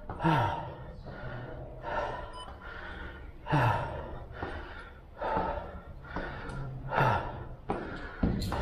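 A man breathing hard from climbing stairs: loud puffed breaths out about every one and a half to two seconds, several ending in a voiced sigh that falls in pitch.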